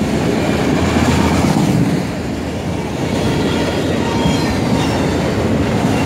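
Autorack freight cars rolling past at speed: a loud, steady rumble of steel wheels on rail, with a faint high wheel squeal now and then.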